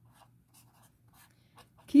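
A pen writing on paper: short, faint scratching strokes.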